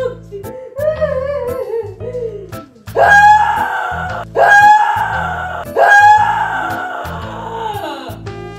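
Background music with a steady beat, over which a woman wails in loud, staged fake crying: three long cries, each starting suddenly and slowly falling in pitch, in the second half.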